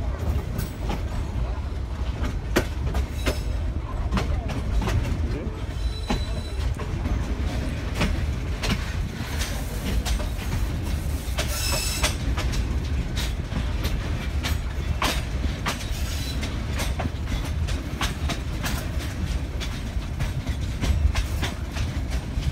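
Local passenger train running, heard from an open carriage window: a steady low rumble with irregular clatter of the wheels over the rails, and a brief high squeal about halfway through.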